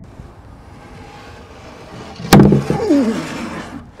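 Large cylindrical neodymium magnets snapping together through a chicken bone, crushing it: one sharp crack about two seconds in.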